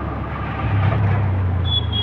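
Auto rickshaw engine running while under way, its low drone growing stronger about two-thirds of a second in, over road noise. A faint thin high tone comes in near the end.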